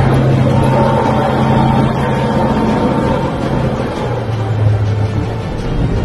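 A tank's engine running with a steady low drone that drops slightly in pitch about four seconds in, mixed with a background music track.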